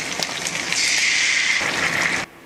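Dark sauce hitting a hot frying pan of seared meat, sizzling as it boils. The sizzle swells louder about a second in.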